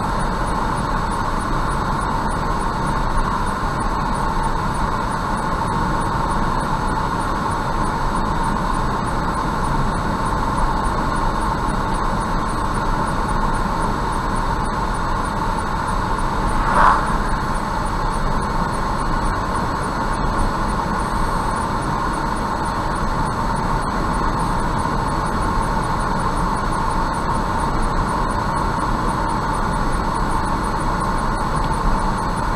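Steady road and tyre noise of a car cruising at about 65 km/h, heard from inside the car. About 17 seconds in there is a brief swell as an oncoming car passes.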